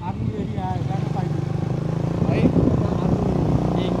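Motorcycle engine running steadily at an even pace, heard from on or beside the bike, with brief voices over it.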